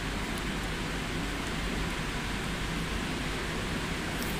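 Steady hiss of background noise with a low hum underneath, unchanging throughout.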